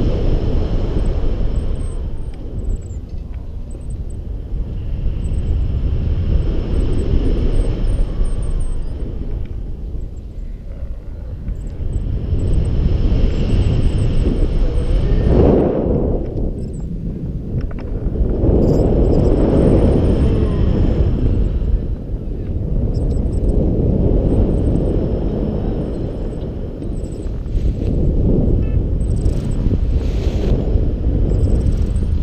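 Wind rushing over the camera microphone in paraglider flight, swelling and easing every few seconds.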